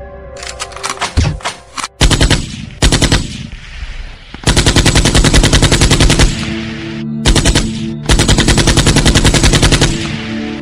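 Machine-gun fire sound effect in rapid bursts: several short bursts, then two long sustained bursts of about two seconds each.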